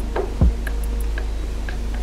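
Background music with a beat: a steady deep bass, one deep kick drum that drops quickly in pitch about half a second in, and ticking hi-hats.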